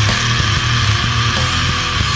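Loud heavy rock music in an instrumental stretch: distorted electric guitar held over a bass line that moves in short notes, with no vocals.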